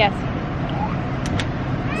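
A steady low rumble of a vehicle engine running close by, with wind buffeting the microphone.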